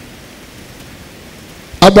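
Steady, even background hiss during a break in speech, then a man's voice starts again near the end.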